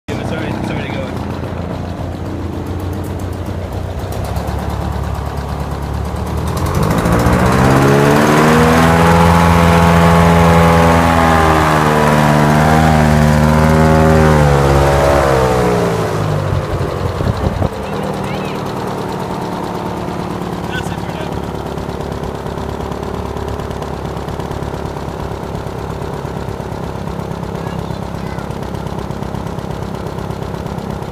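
UH-10F hovercraft's engine and fan running steadily, then revved up after several seconds, the pitch rising and held high for several seconds, then eased back down to a lower idle a little past the middle. This is a first lift test, run up to see whether the hull will rise off the ground.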